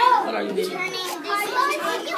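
Young children's voices chattering.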